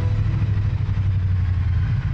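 Motorcycle engine running with a steady low rumble.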